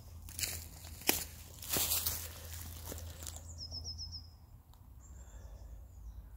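Footsteps and rustling through woodland ground cover with a few clicks and knocks of the camera being handled, loudest in the first two seconds. A bird sings a short run of high notes about three and a half seconds in.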